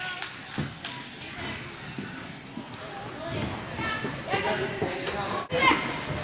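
Noise of an indoor soccer hall: distant children and spectators calling out over the general din, with a couple of sharp knocks of a soccer ball being kicked about half a second to a second in. The shouted calls grow more frequent in the second half.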